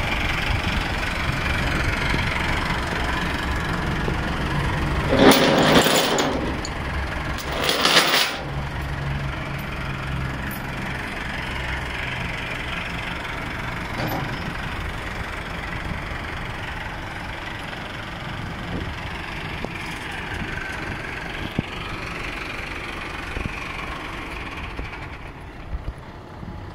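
Massey Ferguson tractor's diesel engine running steadily as the tractor sits on a flatbed trailer during loading. There are two brief louder rushes of noise about five and eight seconds in.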